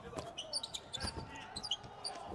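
Basketball being dribbled on a hardwood court: several uneven bounces, with short high sneaker squeaks on the floor.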